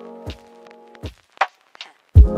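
Background music: a held chord over deep drum hits, thinning to a few light ticks in the second half.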